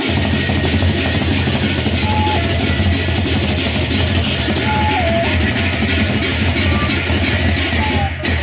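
Sasak gendang beleq ensemble playing: large barrel drums and a dense, rapid clashing of many hand cymbals, loud and continuous over a steady low drum pulse. A few brief held melodic notes step down in pitch above the percussion.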